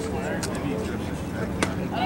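A single sharp pop about a second and a half in, a pitched baseball smacking into the catcher's mitt, over low spectator chatter and a steady low hum.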